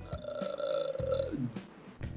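A man's long, drawn-out hesitation sound while thinking, held on one pitch for over a second, then sliding down and trailing off. Quiet background music plays underneath.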